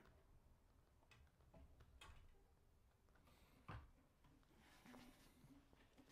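Near silence with a few faint knocks and rustles of handling as an acoustic guitar is picked up; the clearest knock comes a little past halfway.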